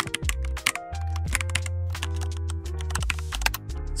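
Computer-keyboard typing clicks, quick and irregular, over background music with a sustained bass line.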